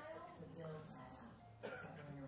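A woman's voice speaking faintly in dialogue from a film clip, with a short sharp noise, like a cough, about one and a half seconds in.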